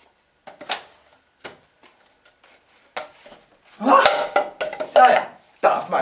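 Light taps and clicks of a small ball and a plastic water bottle being tossed and caught in the hands while juggling, then a man's voice briefly about four seconds in.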